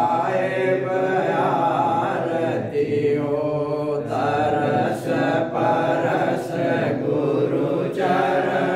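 Devotional chanting of an aarti hymn: a continuous, steady sung recitation.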